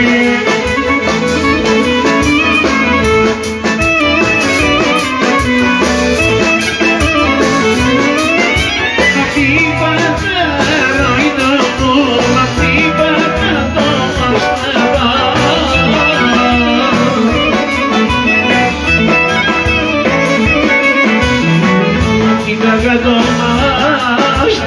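Live Greek folk dance music from a clarinet-led band, with a man singing into a microphone, played loud through the hall's speakers.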